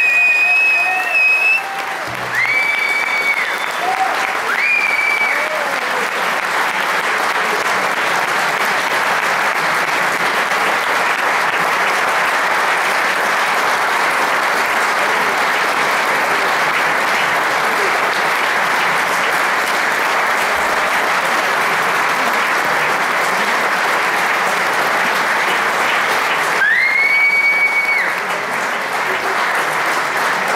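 Concert audience applauding steadily, with a few high whistles in the first five seconds and one longer whistle near the end.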